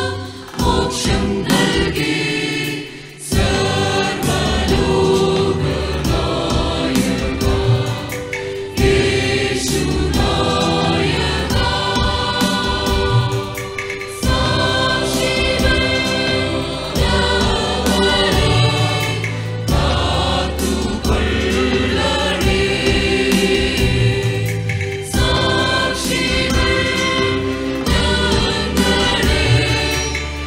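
Mixed choir of women's and men's voices singing a sacred song together in harmony. The singing breaks off briefly about three seconds in, then carries on.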